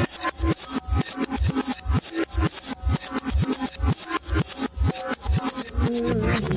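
Pop song played in reverse: an instrumental stretch with a steady beat of backwards drum hits, about four a second, and no singing.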